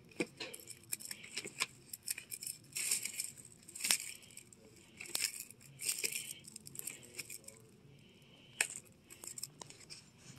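Cardboard LP record jackets being flipped through in a cardboard box: a run of irregular papery swishes and clacks as the sleeves slide and knock against each other.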